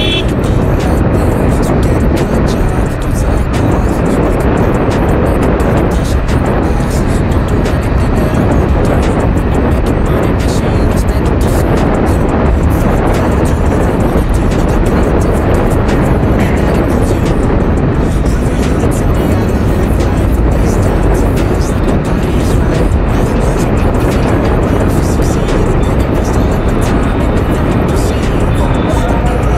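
Steady wind rush over the microphone with the engine and road noise of a TVS Apache motorcycle cruising at a constant speed. Music plays underneath.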